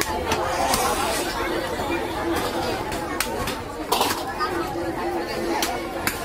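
Meat cleaver chopping cow leg bone on a wooden chopping block: a run of sharp chops at uneven intervals, heard over the chatter of voices.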